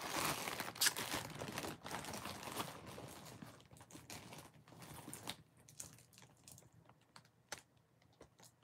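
A clear plastic zip bag crinkling as it is handled, with the costume jewelry inside it clicking and rattling. The noise is busiest in the first few seconds, then thins to a few scattered clicks.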